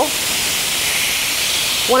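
Marinated skirt steak sizzling steadily on a hot indoor electric grill plate at medium heat, the sizzle of raw beef just laid onto the grill.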